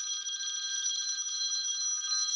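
A steady electronic ringing tone, several high pitches sounding together at an even level.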